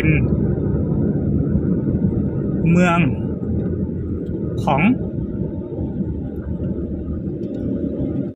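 Steady low rumble of a car driving along, heard from inside the cabin.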